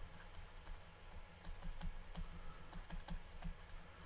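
Faint, irregular light clicks and taps of a stylus on a tablet screen during handwriting, over a low steady hum.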